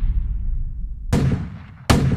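Edited-in impact sound effect: a deep, steady low rumble with two sharp bangs, one about a second in and one near the end.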